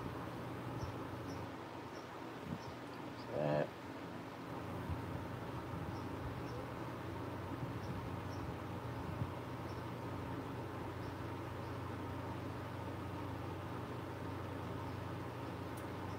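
Electric fan running steadily in the room, a constant low hum with a light hiss. A short voiced hum breaks in briefly about three and a half seconds in.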